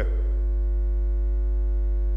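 Steady low electrical mains hum on the church's sound system, with a few faint steady higher tones above it and no change through the pause.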